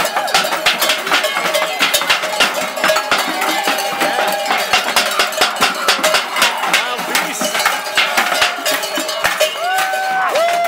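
Cowbells shaken by dancers, clanging constantly and unevenly at several strokes a second, with drawn-out wailing cries now and then, one near the middle and one at the very end.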